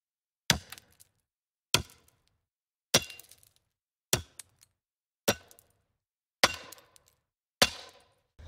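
A series of sharp percussive sound-effect hits in a logo intro, seven of them evenly spaced a little over a second apart, each a short clack with a brief ringing tail.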